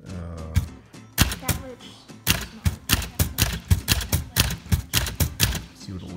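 1946 Smith Corona Silent manual typewriter typing: a few separate key strikes, then a steady run of about five strikes a second as a row of alternating capital and small h is typed with the shift key for an alignment test. The typing is muted, which the typist puts down to the machine's noise-reducing platen.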